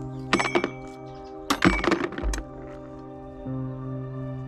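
Background music of held chords throughout. Over it come two short clusters of metallic clinks, small metal pieces knocking together, about half a second in and again from about one and a half to two and a half seconds in.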